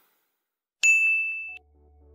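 A single bright ding sound effect about a second in, ringing as one high tone that cuts off abruptly after under a second. Faint background music starts near the end.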